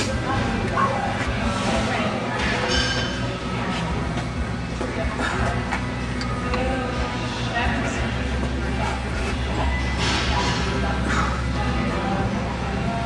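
Gym ambience: background music playing over indistinct voices, with a few faint clinks.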